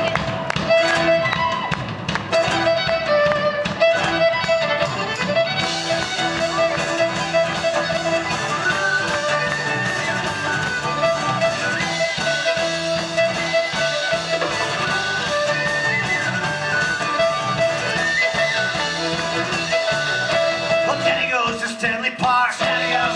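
Live Celtic band: a bowed fiddle carries the lead melody over electric bass guitar and banjo.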